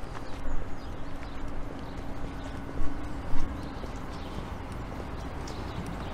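Footsteps of a person walking on paving stones, with wind rumbling on the microphone and two louder steps about halfway through.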